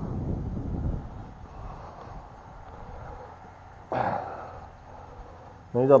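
Low rumbling handling noise, then a short scrape about four seconds in as a concrete well lid is moved off the well opening. A man's voice begins at the very end.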